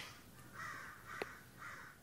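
Two faint bird calls about a second apart, with a soft click between them, over quiet room tone.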